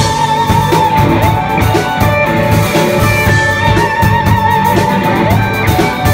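Live rock band playing an instrumental passage: electric guitar holds a long wavering high note over a drum kit.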